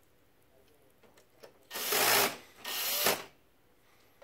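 Cordless drill/driver run in two short bursts of about half a second each, starting about two seconds in, driving screws back into a printer's metal side frame during reassembly.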